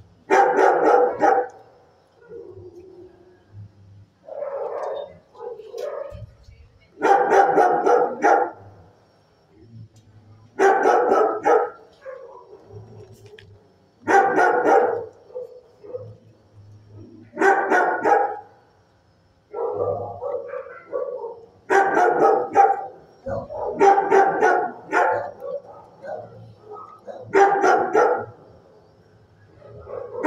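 Shelter dogs barking in loud bursts of several quick barks, one burst every three or four seconds, with quieter vocal sounds between the bursts.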